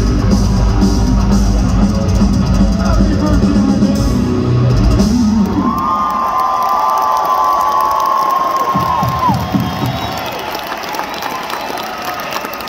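A heavy metal band playing live through an arena PA, with loud drums and bass, comes to a stop about five seconds in. The crowd then cheers and whoops, and a long, high, steady tone sounds over the cheering for a few seconds.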